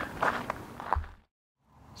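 A few footsteps crunching on a gravelly shore path, ending with a soft thump about a second in; the sound then cuts out to dead silence.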